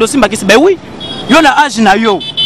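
A man talking loudly and excitedly, in two bursts with a short pause between. A thin, steady, high-pitched tone, quieter than the voice, comes in about a second in and holds.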